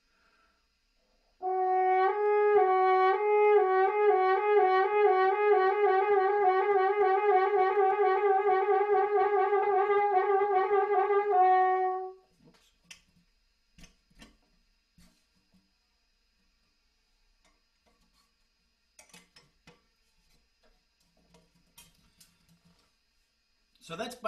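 French horn playing a lip trill between two neighbouring notes, slurring back and forth slowly at first and speeding up into a fast shake, for about ten seconds before stopping sharply. Faint clicks of the horn being handled follow.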